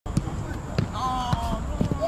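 A football thumping several times as players kick and head it back and forth over a low net, with a voice calling out in the middle.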